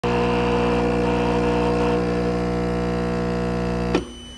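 Espresso machine's pump running steadily while pulling a shot into a glass of milk, a steady hum with a hiss of water over it. It cuts off suddenly at the end.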